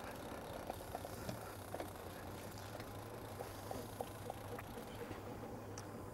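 Quiet steady low hum of the fishing boat's idling motor, with scattered light clicks from the fishing reel as a hooked Chinook salmon is played on the rod.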